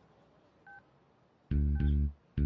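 A single short two-tone telephone keypad beep a little under a second in, then two loud low bass notes of film background music near the end.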